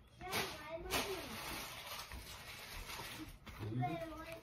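A paper passport being handled and its pages flipped: a soft rustling with one sharp tap about a second in. A faint voice sounds underneath now and then.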